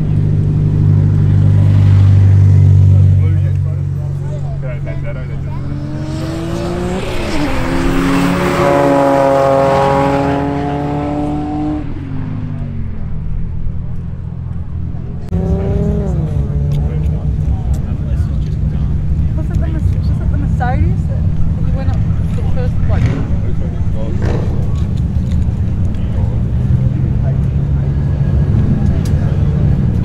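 Race cars accelerating hard side by side in a roll race, their engine notes climbing in pitch as they rev out, then dropping away as they pass. About halfway through, a second pair of cars is heard running flat out.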